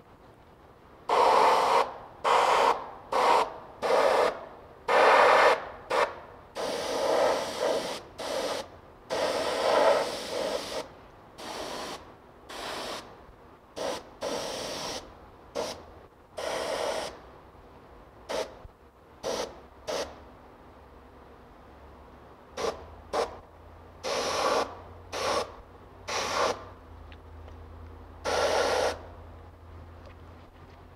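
Airbrush spraying black FW ink thinned with rubbing alcohol onto a latex mask, in short irregular hissing bursts as the trigger is worked. The bursts are longer and louder in the first half, then shorter and sparser.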